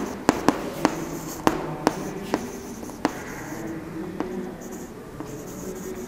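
Chalk writing on a chalkboard: light scratching strokes with a string of sharp taps as the chalk meets the board, the taps coming more often in the first half.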